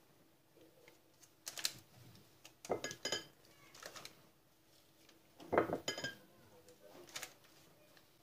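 Hands handling food in a parchment-lined glass baking dish as tomato slices are pressed into whole sea bass. Scattered light clinks and paper crinkles come in small clusters with quiet gaps between them.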